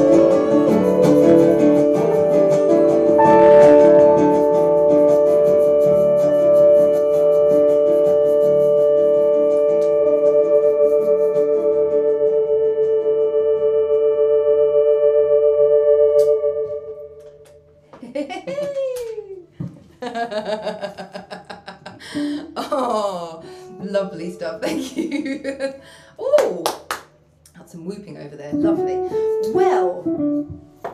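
Semi-hollow electric guitar ending a song on a long ringing chord that fades out a little past halfway. After it come voices whose pitch rises and falls, with no clear words.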